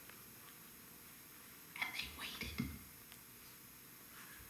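A woman's short, soft, whisper-like vocal sound about two seconds in, lasting about a second, after a quiet start.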